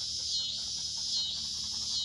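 Insect chorus: a high-pitched buzzing drone that swells and fades a little more than once a second.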